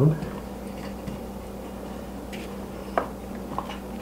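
Light clicks from handling a biscuit joiner as its height-adjustment fence is set, one about three seconds in and a smaller one shortly after, over a steady low hum.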